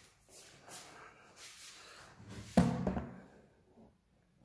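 Rustling and scraping handling noise as the recording camera is moved, then one loud knock with a brief ringing about two and a half seconds in.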